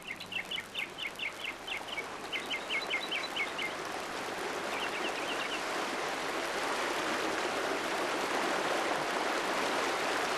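A bird calls in quick runs of chirps, three runs in the first six seconds, over a steady rushing noise like running water that slowly grows louder.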